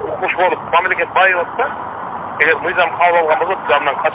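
A man speaking over a telephone line, his voice thin, with the top cut off as a phone call sounds.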